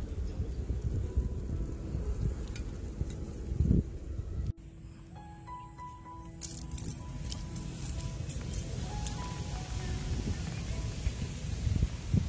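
Wind rumbling on the microphone outdoors, swelling briefly near the fourth second. About four and a half seconds in it cuts off suddenly to background music: a simple melody of high notes with light clinking.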